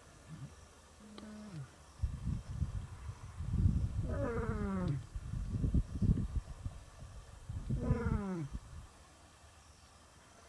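Male lion roaring as a contact call to his pride: a bout of deep pulsing grunts with two long roars that fall in pitch, about four and eight seconds in.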